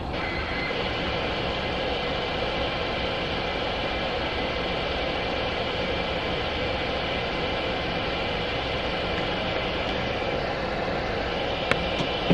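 Freight train boxcars rolling past a grade crossing, heard from inside a car: a steady rumble and hiss with a few faint thin high tones, and a single click shortly before the end.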